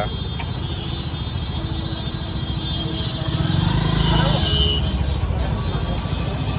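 Busy street ambience: a steady low rumble of road traffic with faint voices in the background, a little louder around the middle.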